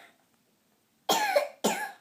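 A young girl coughing twice in quick succession, close to the microphone.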